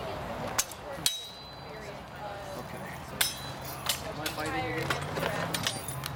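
Steel fencing swords striking together several times in sharp metallic clashes; the strongest, about a second in, rings on briefly with a high tone. Voices murmur in the background.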